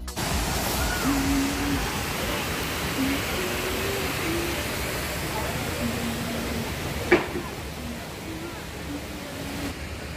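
Steady rush of the river waterfall and rapids, with faint voices of people in the background. A single sharp knock comes about seven seconds in, after which the water grows a little fainter.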